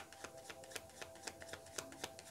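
A deck of tarot cards being shuffled by hand, small packets dropped from one hand onto the cards in the other: a quiet, rapid, irregular run of light card clicks and flicks, several a second.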